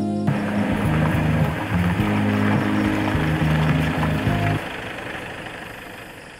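Dramatic background music of low held chords over a steady rushing noise. The chords stop about four and a half seconds in, and the rush fades away after them.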